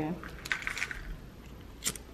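A handheld lighter being flicked, with one sharp click near the end and faint handling sounds before it.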